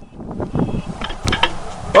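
Hand-held camera jostled during a jump and landing: rustling, scuffing and handling knocks, with a cluster of sharp clicks about a second and a half in.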